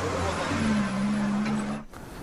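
A road vehicle running: a steady noise with a low engine hum, cut off abruptly just before the end.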